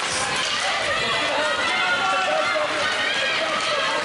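Several voices shouting and calling over one another in an ice rink, with the scrape of skates on the ice underneath.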